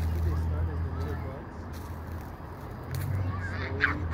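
Outdoor background with a steady low rumble and faint voices, and a short loud honk near the end.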